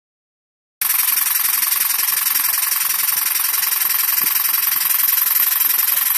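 Oscillating-cylinder "wobbler" model steam engine running on compressed air: a steady hiss of air with a fast, even chuffing from the exhaust. The sound starts abruptly a little under a second in.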